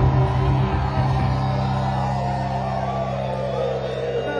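Live funk band playing, holding a sustained low bass note and chord that slowly fade.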